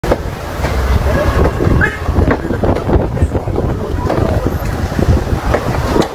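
Wind buffeting a phone microphone with a heavy, uneven rumble, and people's voices talking underneath.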